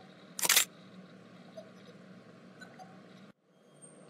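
A single camera shutter click about half a second in, over a faint steady room hum.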